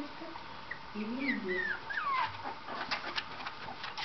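A very young puppy whimpering: three or four short, high squeaks between about one and two and a half seconds in, each falling in pitch.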